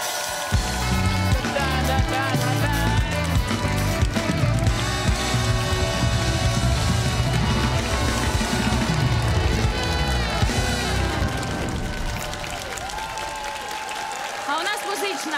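A band playing an upbeat interlude, drums and cymbals over a heavy, driving bass line; the music drops away about twelve seconds in.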